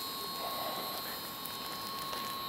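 Steady outdoor city background noise, an even hum with a faint constant high whine and no distinct events.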